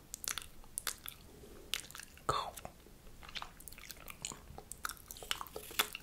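Close-up ASMR mouth sounds: a string of irregular wet clicks and smacks, with a longer wet, smacking sound a little past two seconds in.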